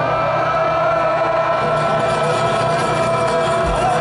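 Live concert music heard from the audience, with a single long, steady held note running through it over the band's low end.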